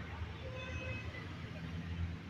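Low steady background rumble with faint voices, and no distinct sound from the bicycle.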